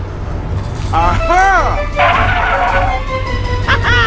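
Background music with a steady low beat, overlaid by high, cartoon-like vocal sounds that swoop up and down in pitch about a second in and again near the end.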